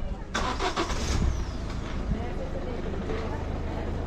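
A motor vehicle engine starting abruptly about a third of a second in, then running steadily with a low hum.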